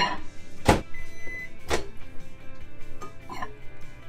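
Microwave oven being used: its door clicks open, a glass cup goes in and the door knocks shut, four sharp clicks and knocks in all. A short high beep sounds about a second in.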